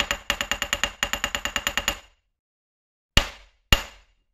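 Title-animation sound effect: a fast, even run of sharp metallic clicks, about ten a second for two seconds, one for each title letter appearing. After a pause come two louder single strikes, half a second apart, near the end.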